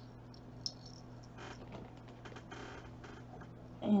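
Faint, scattered clicks and light rattles of a gold-tone metal chain necklace and its clasp being turned over in the fingers.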